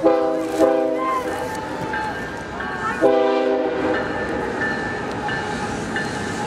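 Locomotive air horn sounding a steady chord: one blast at the very start, sounded again about half a second later, then a second short blast about three seconds in.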